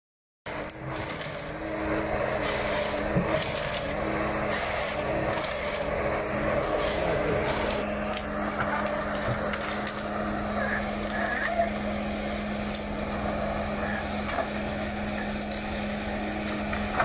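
Ponsse Ergo forestry harvester running with a steady engine drone, a higher whine coming and going as the crane works, and a few sharp cracks.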